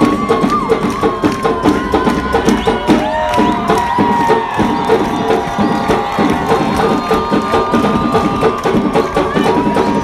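Carnival samba drum section (batería) playing a fast, dense batucada rhythm on surdos and snare drums, with long held high tones above the drums and a crowd cheering.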